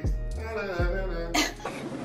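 Background music with pitched notes and deep falling bass hits, and a short rasping burst like a cough about one and a half seconds in.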